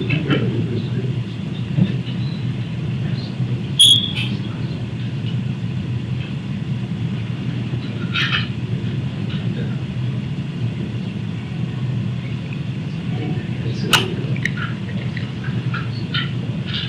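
Steady low room hum, with a few faint, brief clicks about four, eight and fourteen seconds in.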